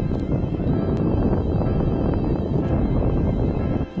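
Wind buffeting the microphone over choppy water, a steady low rumble, with faint background music underneath.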